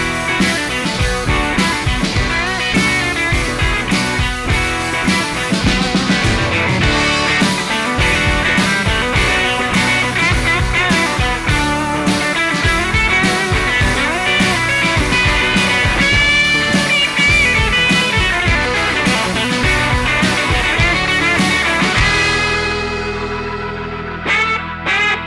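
Overdriven electric guitar solo with bent notes, from a 1974 Gibson SG with Sonic Monkey pickups through a Fender Blues Junior amp, played over a rock band backing track with drums and bass. Near the end the band thins out and the level drops.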